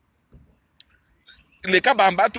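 A man's voice breaks off into a short pause broken by one brief sharp click, then resumes speaking about a second and a half in.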